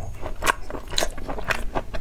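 Close-miked chewing of a mouthful of braised beef, with sharp mouth clicks about twice a second.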